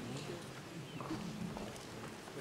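Faint voices talking off-microphone in a hall, with a few soft knocks such as footsteps on a stage.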